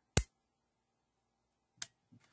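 Kodak Pocket Instamatic 60 shutter firing with its double click: a sharp click as it opens, then a second click about a second and a half later as it closes. The two clicks show the shutter working on the 3D-printed K battery.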